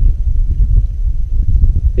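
Wind buffeting the camera's microphone: a loud, uneven low rumble with no other clear sound over it.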